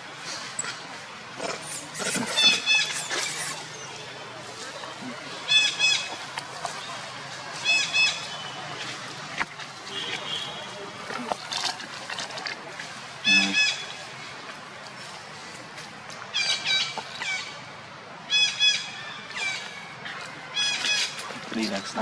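Long-tailed macaque giving repeated short, high-pitched wavering calls in bursts every two to three seconds, like a young monkey crying.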